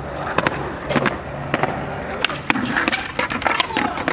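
Skateboard rolling on concrete, with repeated sharp clacks of the wooden deck and wheels striking the ground, several coming in quick succession in the second half.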